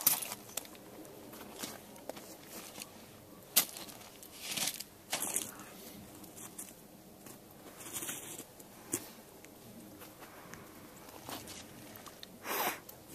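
Quiet handling sounds of a .38 Special revolver being reloaded: scattered small clicks and clinks of cartridges and the cylinder, with one sharper click about three and a half seconds in.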